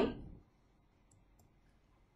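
A voice trails off, then near silence holds a few faint, sharp clicks about a second in, from a computer mouse advancing the presentation slide.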